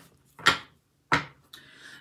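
Tarot cards being handled as a single card is pulled from the deck and laid down: two short, sharp card sounds, about half a second in and again just after one second.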